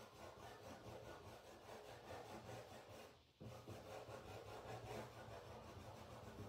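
Faint rubbing of a paintbrush working blue paint into cloth, with a brief stop a little past three seconds in.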